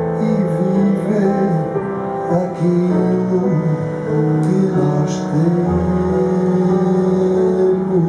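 Live jazz quintet playing: a melody line of long held notes that slide between pitches, over piano chords, with a low bass note about six seconds in.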